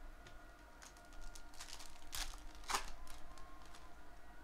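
Foil trading-card pack wrappers crinkling and cards rustling as they are handled, with light clicks throughout and two louder swishes a little past two seconds in.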